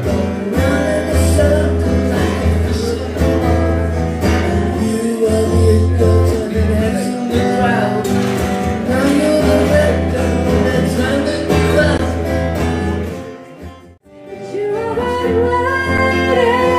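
A man singing live with a strummed acoustic guitar. About two seconds before the end the song cuts off, and a woman singing with acoustic guitar begins.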